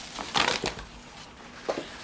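A cloth rustling and swishing as it wipes up spilled denatured alcohol: one longer swish about half a second in, and a shorter one near the end.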